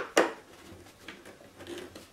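A steel screwdriver clicking against a screw in a brass hinge on a homemade table saw's blade mount: two sharp clicks right at the start, then a few faint taps and clicks.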